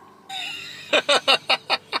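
A person laughing: a breathy start, then a quick run of about six short 'ha' pulses.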